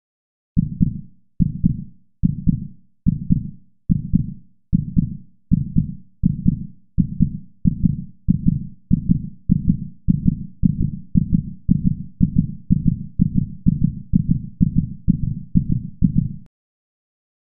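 Heartbeat sound effect: low double thumps in a steady pulse, starting at a little under one a second and quickening to about two a second near the end.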